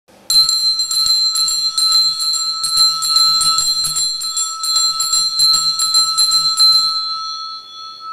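Altar bells rung in a rapid continuous jingle for about seven seconds, then left to ring out with a fading tone, sounding as the priest raises the monstrance in the Eucharistic blessing.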